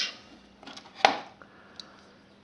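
Steel vernier caliper being handled and lifted from its wooden case: a few light metallic clicks, and one sharper clack about a second in.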